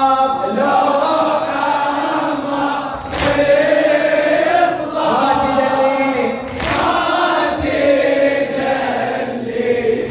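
A Husayni radood chanting a latmiya lament into a microphone, with men's voices chanting along in chorus. A sharp strike cuts through about every three and a half seconds.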